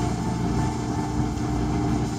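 A steady low mechanical hum with a few constant tones running through it.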